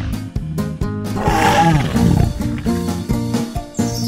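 Background music with a steady beat, with a cartoon dinosaur roar sound effect about a second in, falling in pitch and lasting about a second.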